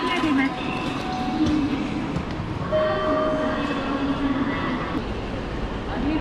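Busy railway station ambience with a voice heard over it, clearest from about three to five seconds in.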